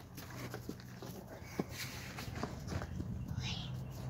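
Light footsteps and rustling on dry straw-covered ground, with scattered small clicks and knocks, one sharper click about a second and a half in.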